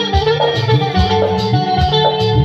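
Live band playing a song on bass guitar, drum kit, keyboard and hand drum, with a steady drum beat.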